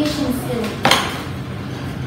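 A single sharp clink, like a hard object striking metal or glass, a little under a second in, with a short ring after it; a voice falls away just before it.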